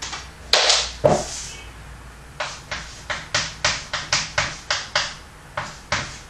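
Chalk tapping against a chalkboard while writing: two louder strikes in the first second, then a quick even run of sharp taps, about four a second, for nearly three seconds.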